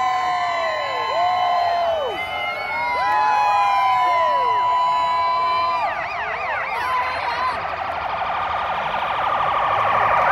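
Several police car sirens sounding at once, overlapping wails that rise, hold and fall. About six seconds in they switch to a fast warbling yelp.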